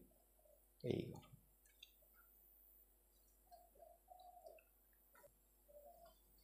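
Near silence, with a brief low voice sound about a second in and a few faint sharp clicks of a computer mouse as the quiz page is clicked and scrolled.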